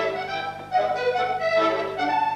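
Solo accordion playing a traditional tune, a melody of quick changing notes, with a brief drop in volume a little under a second in before the playing carries on.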